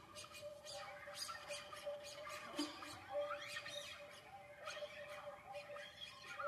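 Classical guitar ensemble with an Iranian setar playing a soft passage: scattered plucked notes over a held tone, with sliding, bending pitches.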